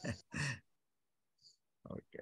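Speech only: a short voiced utterance or sigh, a pause, then a brief "okay" near the end.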